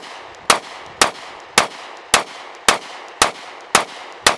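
Glock Model 30 compact .45 ACP pistol fired in a steady string, about two shots a second, eight shots evenly paced.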